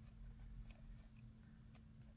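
Near silence: faint room tone with a low hum and a few faint, scattered ticks.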